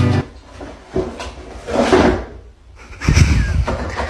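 A car's rear tailgate swinging down and slamming shut with a knock, followed by scuffing and heavy low thuds.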